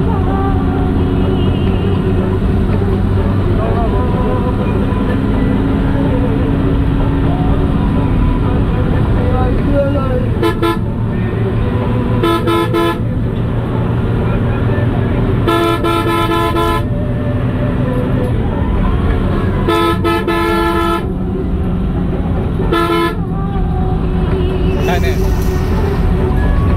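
A large vehicle's engine drones steadily on the road, and a horn sounds five times, the third and longest blast lasting more than a second.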